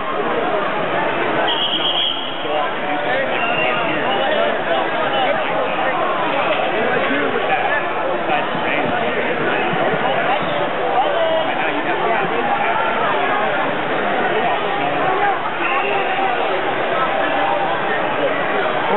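Many spectators talking and calling out at once in a large gym hall: continuous, steady crowd chatter with no single voice standing out.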